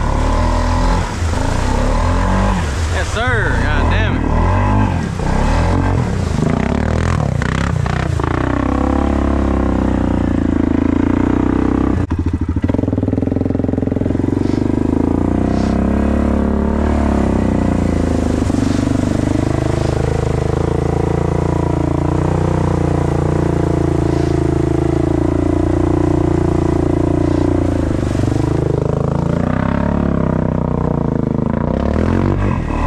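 Can-Am ATV engine revving hard and unevenly while pushing through deep mud for the first several seconds, then running at steadier high revs that rise and fall slowly as it drives on through muddy water. A voice is also heard over it.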